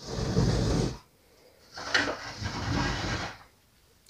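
Plastic Sylvanian Families post office playset slid across a hard floor surface in two scraping pushes, the first lasting about a second and the second, after a short break, nearly two seconds.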